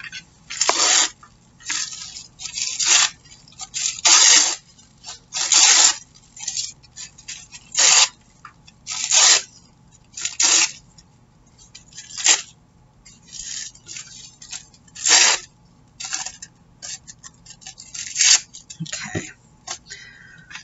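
Tissue paper being torn by hand into pieces: a dozen or so short rips and rustles at irregular intervals.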